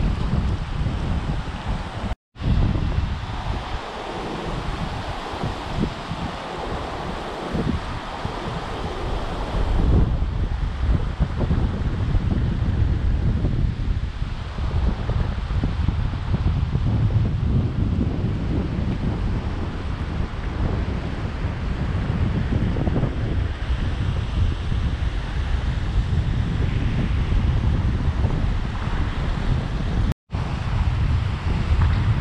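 Shallow surf washing over flat sand, with wind buffeting the microphone in a heavy low rumble. The audio cuts out for a moment about two seconds in, and the wind rumble grows stronger about ten seconds in.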